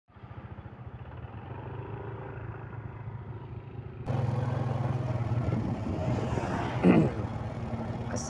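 Small motor scooter engines running steadily as scooters ride past and away. The sound gets louder and fuller about halfway through, and a short, loud, pitched sound stands out near the end.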